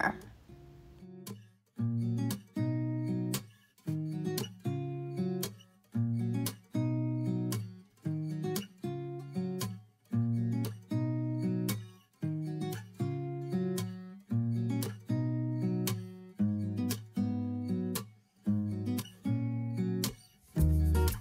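Background music: acoustic guitar chords strummed in a steady rhythm, starting about a second and a half in.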